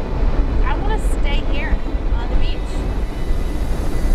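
Wind buffeting the microphone with a steady low rumble, with a few short high-pitched calls that rise and fall in pitch over the top.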